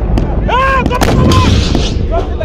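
Battlefield gunfire: several sharp shots, two close together about a second in, over a steady low rumble, with a man's brief shout.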